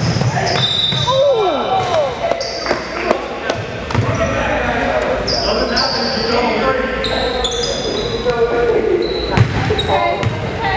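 Basketball game on a hardwood gym court: the ball bouncing in scattered thumps, sneakers squeaking in short high chirps, and indistinct shouts from players and onlookers.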